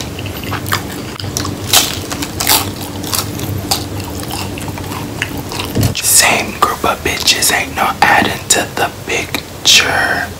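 A person chewing a crunchy hard-shell taco close to the microphone, with sharp crunches over a low steady hum. The hum stops about six seconds in, and whispered speech follows.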